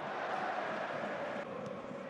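Stadium crowd at a football match, a steady din from the stands that dips slightly about one and a half seconds in.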